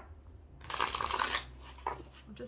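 Deck of oracle cards riffle-shuffled by hand: a fast rippling burst lasting under a second, starting about half a second in, then a short tap near the end as the halves are pushed together.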